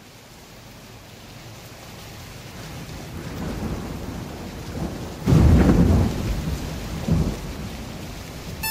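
Recorded rain and thunderstorm sound effect opening a song, fading in gradually, with a loud roll of thunder about five seconds in and a smaller rumble near the end.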